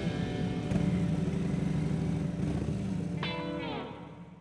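A Harley-Davidson police motorcycle's V-twin engine running at low revs, a steady pulsing rumble, under the closing notes of a country song. Near the end a falling pitch slide is heard and the sound begins to fade out.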